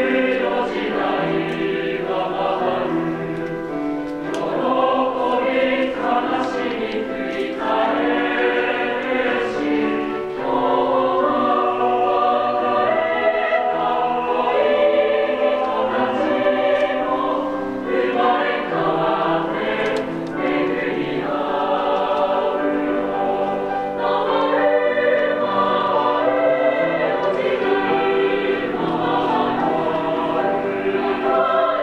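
A large high school mixed-voice choir, girls and boys, sings a song in parts.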